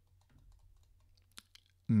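A few faint clicks from a computer keyboard and mouse in quiet room tone, with one sharper click about one and a half seconds in. A man starts speaking at the very end.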